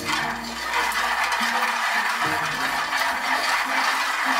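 Raw peanuts rattling and scraping against a dry metal pan as they are stirred with chopsticks during roasting.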